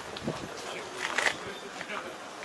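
Faint voices over steady outdoor background noise.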